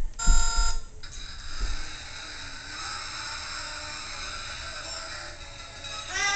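Electronic toy sound: a loud beeping tone lasting about half a second just after the start, then a fainter, steady electronic hum with thin high tones.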